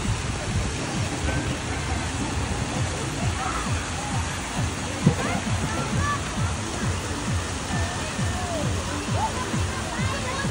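Busy outdoor swimming pool: a steady rush of water noise with children's distant shouts and splashing, and music in the background. One sharper splash stands out about five seconds in.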